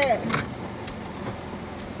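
Steady low noise of a car moving slowly, heard from inside the cabin, with a few faint clicks.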